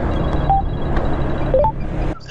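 Automatic scooter riding along with a steady low rumble of engine and wind, over which a phone gives a few short electronic beeps for an incoming call: one about half a second in, then a quick couple near the end.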